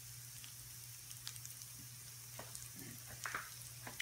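Saltine-crumbed pork schnitzel frying in margarine in a skillet: a steady, quiet sizzle with scattered small crackles over a low hum.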